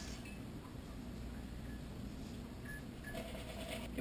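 Quiet kitchen room tone: a steady low hum with faint, brief handling noises.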